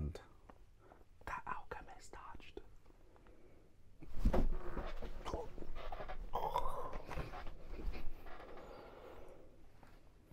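A low, indistinct voice with no clear words, preceded by a run of light clicks and a low thump about four seconds in.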